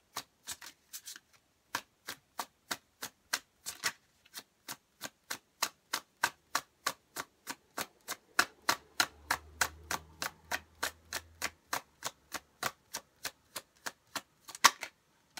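A tarot deck being shuffled in the hands: a steady run of crisp card taps and slaps, about three or four a second.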